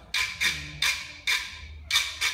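A hand percussion instrument used in Capoeira Angola, struck in an even beat of about two to three sharp, bright strokes a second.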